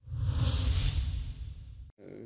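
A transition whoosh sound effect for a news graphic: airy hiss over a low rumble that swells quickly, peaks about half a second in, then fades away.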